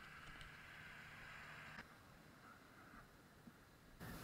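Near silence: a faint, steady background hiss that steps slightly quieter just under two seconds in.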